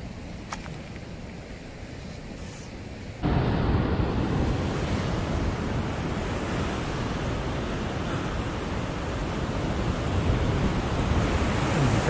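Ocean surf washing and breaking against a rocky shore, with wind rushing over the microphone. It is fairly soft for about three seconds, then suddenly becomes louder and fuller.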